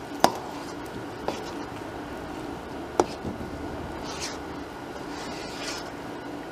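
Wet, soft dumpling dough being squeezed and mixed by hand in a stainless steel bowl, with three sharp clinks against the bowl, the first just after the start and the last about three seconds in, over a steady low hum.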